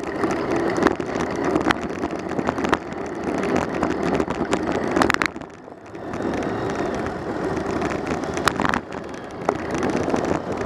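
Riding noise picked up by a camera mounted on a moving bicycle: a steady rush of wind on the microphone and tyres on the road, with scattered sharp knocks and rattles from bumps. The rush dips briefly about halfway through, then picks up again.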